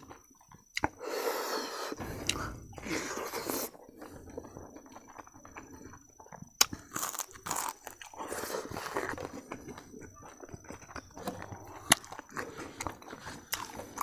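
A person eating a spoonful of rice and dal curry close to the microphone: wet chewing and mouth sounds, with a few sharp clicks.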